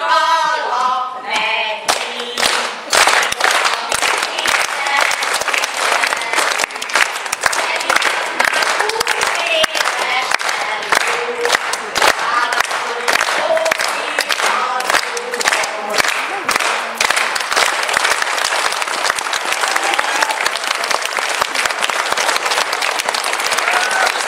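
Women's voices sing the last notes of a song together and stop about two seconds in. An audience then applauds steadily through the rest, with scattered voices among the clapping.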